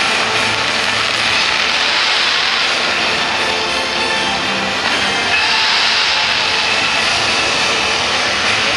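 Fireworks launching with a loud, steady hiss, the show's music faint beneath. The hiss turns brighter about five seconds in.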